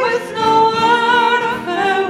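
Women singing a folk song to acoustic guitar, holding long notes with a slight vibrato, with a change of note near the end.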